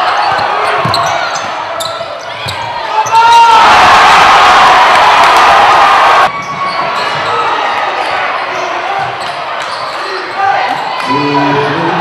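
Basketball game sounds in a gym: a ball bouncing on the hardwood floor, sneakers squeaking and the crowd talking. About three and a half seconds in, the crowd breaks into loud cheering for nearly three seconds, which cuts off abruptly.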